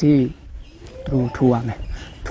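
A man speaking, talking in two short phrases with a brief pause between them.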